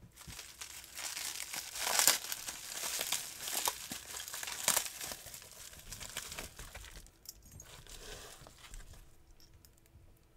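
Plastic bubble wrap crinkling and crackling as it is pulled open by hand to free a padlock. It is loudest about two seconds in and again near five seconds, then fades to lighter rustling after about seven seconds.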